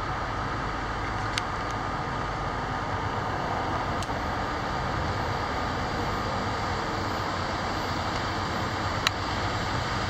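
Steady rumble of a CP freight train's open-top freight cars rolling past, steel wheels running on the rails. Three sharp clicks stand out, at about a second in, near the middle and near the end.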